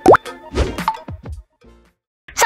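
The end of an animated intro jingle: a loud, quick upward-sliding pop right at the start, then a few smaller pops that die away about a second and a half in, leaving a short silence.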